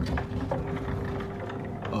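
Light mechanical clicks and rattles from something being handled, over a faint steady hum.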